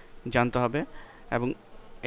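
A man's voice speaking two short bursts of words with pauses between them.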